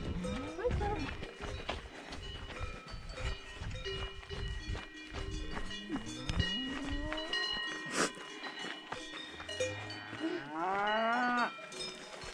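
Cowbells ringing on a herd of grazing cattle, with cows mooing several times and one long moo near the end.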